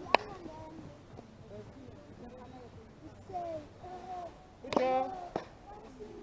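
Players' voices calling out across the field in short shouts, the loudest one about five seconds in, with one sharp knock just after the start.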